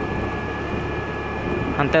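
Steady running noise of a vehicle moving along a dirt road, with a faint steady whine above it.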